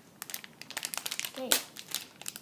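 Foil blind-pack wrapper crinkling and crumpling in the hands as it is worked open, a run of irregular sharp crackles.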